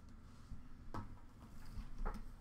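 Quiet handling of trading cards, with one light tap about a second in as a card is set down.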